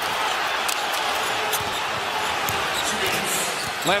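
Basketball dribbled on a hardwood court, a few sharp bounces standing out over steady arena crowd noise.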